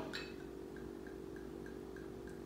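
Coconut rum glugging out of a bottle as it is poured into a jigger: small, evenly spaced glugs about three a second, starting shortly in, over a faint steady hum.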